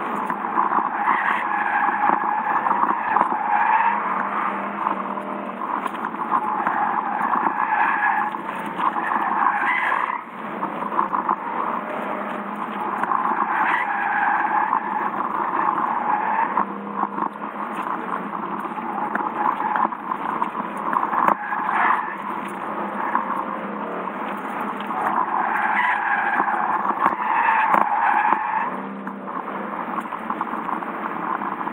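Car tyres squealing in several long slides of a few seconds each, over steady engine noise, heard from inside the cabin of a Lexus sedan being driven at the limit of grip.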